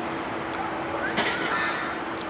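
Steady road traffic noise from a busy city street, with a low constant hum underneath and a brief sharper noise a little after a second in.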